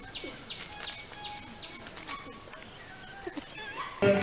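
A bird calling in a quick series of high, downward-slurred notes, about three a second, which stop about two seconds in, over a faint steady high-pitched whine and quiet outdoor background.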